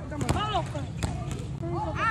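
High-pitched children's voices calling and chattering, with a few sharp knocks among them.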